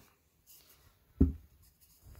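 Handling noise: faint rubbing, then one short low thump a little over a second in.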